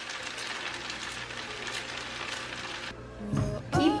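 Background music over a steady sizzle from a pot of seasoned rice frying on the stove. A pitched sound comes in near the end.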